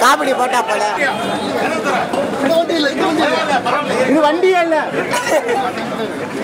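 Speech only: a man talking without pause, with the chatter of other voices around him.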